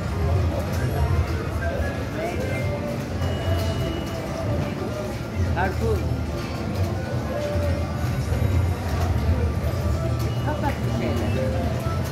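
Casino slot machine din: electronic slot-machine tones and jingles over background chatter and a steady low hum.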